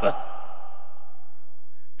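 A pause in a man's microphone-amplified preaching. His last word ends at the very start and its echo fades in the hall, leaving only a steady low hum until he speaks again.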